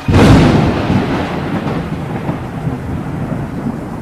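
A thunderclap breaks suddenly just after the start and rumbles away slowly, over steady rain.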